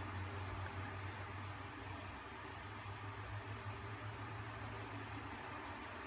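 Faint steady room noise: an even hiss with a low hum, and no scratching strokes.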